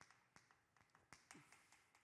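Faint chalk taps on a chalkboard while a short word is written: about ten light, irregular clicks.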